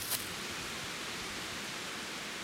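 A steady, even hiss of background noise, with a brief rustle just after the start.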